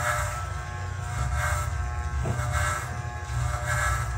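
Andis T-Outliner corded hair trimmer buzzing steadily while its blade is drawn over the scalp, shaving short stubble. A rasp swells and fades with each pass.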